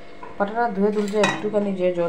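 Stainless steel bowl handled on a kitchen counter, metal clinking against metal, with one sharp clink a little over a second in.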